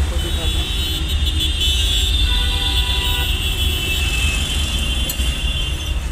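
Low, steady engine rumble of a goods pickup heard from inside its cab, with a high-pitched sustained tone over it that stops about five seconds in.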